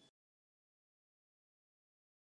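Silence: the sound track drops to complete digital silence.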